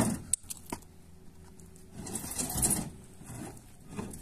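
A concrete hollow block set down onto a stack with a knock, followed by a couple of sharp clicks, then footsteps crunching on gravelly ground about two seconds in.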